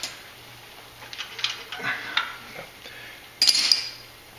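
Metal hand tools clinking as they are handled and sorted through: a few light clinks in the middle, then a louder metallic clatter near the end.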